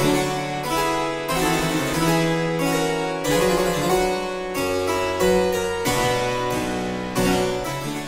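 Baroque instrumental music in a plucked, harpsichord-like texture, with a new chord struck about every two-thirds of a second over a sustained bass.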